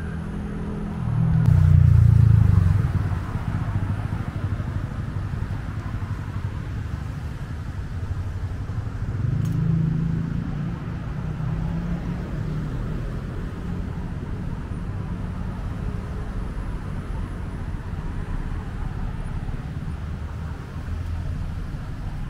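Road traffic passing on a multi-lane road: a steady low rumble of tyres and engines, with one loud vehicle passing about two seconds in and another swell about ten seconds in.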